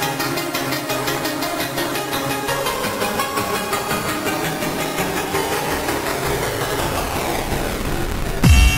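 Happy hardcore music in a breakdown with the kick drum out: a fast, evenly repeating synth pattern over a thickening noise layer, and a sweep that falls in pitch over the last two seconds.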